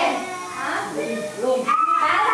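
People talking, with high voices that slide up and down in pitch.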